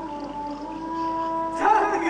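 A man's voice singing long, drawn-out notes, the pitch sliding up a little and holding.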